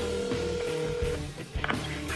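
Telephone ringback tone: one steady ring of about two seconds, stopping about a second in, as an outgoing call waits to be answered. Background music with a low beat runs underneath.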